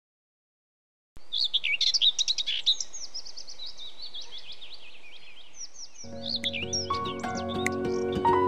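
Silence for about a second, then several birds singing with quick chirps and trills over a faint rush of water spilling over a small stone weir. Music comes in near the end.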